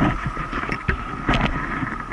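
Honda CB750's air-cooled inline-four engine idling steadily, with a faint steady whine and scattered short knocks and rustles on the microphone.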